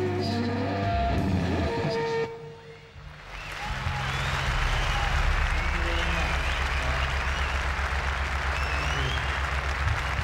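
A rock band's electric guitar and drums play for about two seconds and stop abruptly. After a brief lull, audience applause builds and holds over a steady low hum from the amplifiers.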